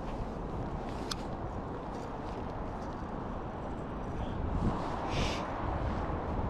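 Steady wind rumble buffeting the microphone, with a single sharp click about a second in and a brief rustle about five seconds in.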